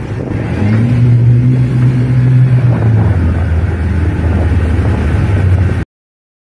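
Speedboat outboard engines running over wind on the microphone: a steady low engine note comes in under a second in and drops to a lower steady note about halfway. The sound cuts off abruptly just before the end.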